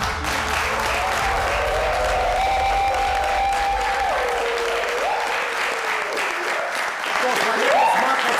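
Studio audience applauding, with a long held pitched sound over the clapping through the middle that steps up and then falls away. A man's voice comes in near the end.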